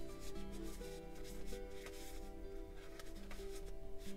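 Soft background music, with the faint rustle of a stack of die-cut paper stickers rubbing against each other as they are shuffled through by hand.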